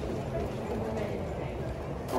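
Airport terminal concourse ambience while walking: footsteps on the hard floor over a murmur of distant voices.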